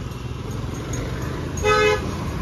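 Low traffic rumble, then a short, steady vehicle horn toot near the end.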